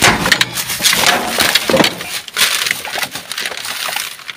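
Black plastic bin bags crackling and rustling as they are pulled about and rummaged through by hand, a dense run of crinkles with no pause.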